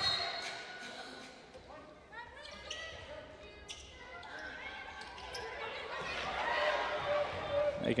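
Basketball being dribbled on a hardwood court during live play, a series of short thumps, with voices calling out in the arena.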